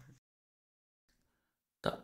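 Near silence between a man's spoken words: his voice trails off at the very start and comes back just before the end, with a dead-quiet gap in between.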